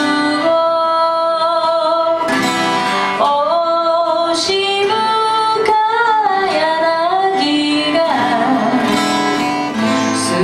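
A woman singing a slow song in long held notes with vibrato, accompanying herself on acoustic guitar.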